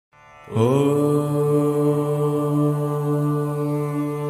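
A single voice chanting one long, held 'Om', coming in about half a second in with a slight rise in pitch and then sustained on one steady low note.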